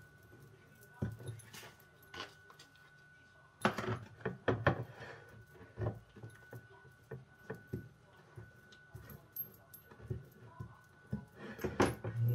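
A table knife scraping and tapping against a plate while spreading a filling across a tortilla wrap: irregular light scrapes and clicks, with a cluster of louder knocks about four seconds in.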